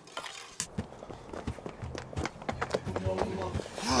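Quick, irregular footsteps of people hurrying on the ground, with a low steady hum underneath from about two seconds in.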